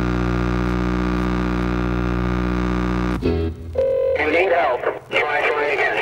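Turntablism on Technics turntables: a long, steady, low held note from the record, which cuts off suddenly about three seconds in. After that come short, chopped and sliding scratched fragments of a sample, cut in and out with the mixer.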